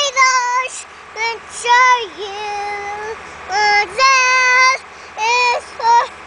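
A young girl singing a string of held notes with short breaks between them, no clear words.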